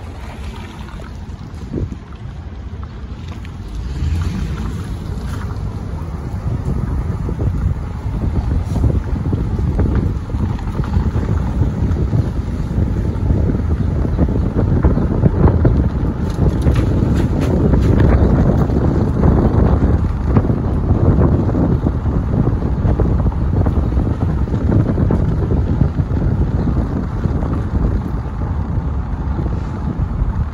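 Wind buffeting the microphone of a camera filming from a moving car, over a low road-noise rumble. It grows louder about four seconds in.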